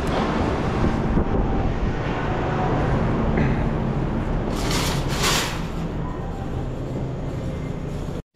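Shopping cart rolling across a hard floor, its wheels rumbling and wire basket rattling steadily. Two short hisses come about five seconds in.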